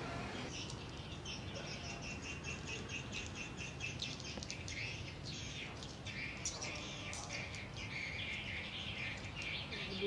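A flock of swiftlets twittering: a continuous stream of many high, rapid chirps.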